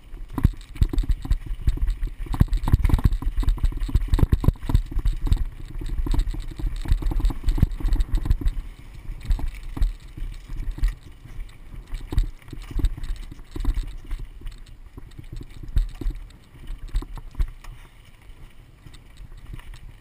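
Mountain bike riding fast down a dry, rocky dirt trail: the tyres rumble over dirt and stones while the bike rattles with many small, irregular knocks. It quietens over the last few seconds.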